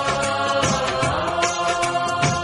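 Punjabi song about the parental home: one long held, slightly wavering note over percussion strokes.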